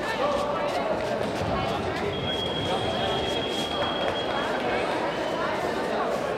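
Background chatter of many voices in a large sports hall, with a steady high-pitched tone held for about two and a half seconds midway.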